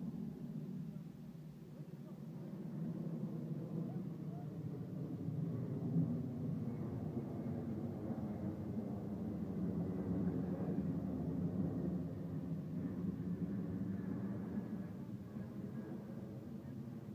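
Jet engines of a C-17 Globemaster III transport running overhead: a steady low rumble that builds to its loudest a little past the middle and eases near the end, with a faint high whine over it.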